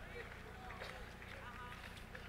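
Quiet pause with room tone: a low steady hum and faint, scattered voices in the background.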